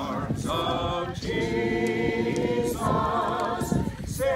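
A group of mourners singing a hymn together without instruments, in slow held notes that change about once a second.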